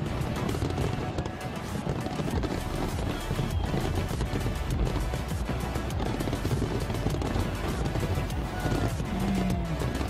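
Large fireworks display: a continuous barrage of aerial shells bursting and crackling, many bangs overlapping above a low rumble.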